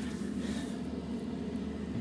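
Steady low mechanical hum with a faint hiss, running evenly.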